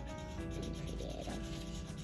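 Felt-tip marker rubbing on paper in repeated back-and-forth strokes as an area is coloured in, over quiet background music.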